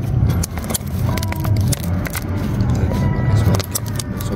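Thin plastic water bottle crinkling and clicking as it is handled and squeezed, over a steady low rumble.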